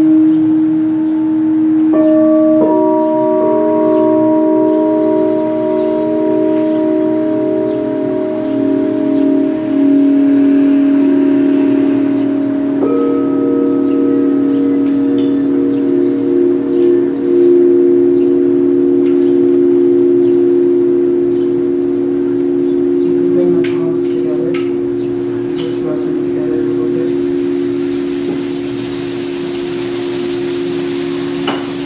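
Singing bowls ringing in long sustained tones that pulse slowly, with new tones joining about two seconds in and again about thirteen seconds in, the whole chord slowly fading. A few faint clicks come near the end.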